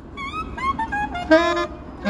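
Saxophone playing a quick run of short notes that slide in pitch, then one loud held note about a second and a quarter in.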